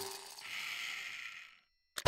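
Cartoon sound effect of a small toy car rolling: a soft rattling whir lasting about a second that fades away, after a tail of children's music at the start.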